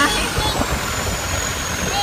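Motorboat engine running steadily under way, with a continuous rush of wind and water.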